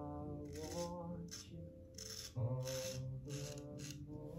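Straight razor scraping through lathered whiskers on the upper lip in a few short strokes, over faint background music with held notes.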